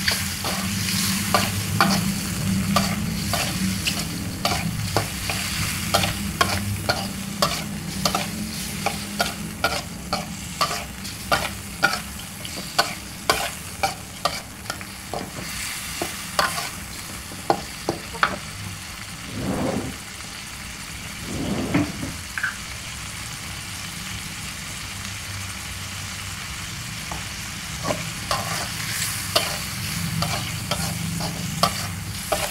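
A slotted metal spatula scraping and clacking against a metal wok while squid and green chillies sizzle in oil. The strikes come quickly for most of the first twenty seconds, ease off for several seconds, then pick up again near the end.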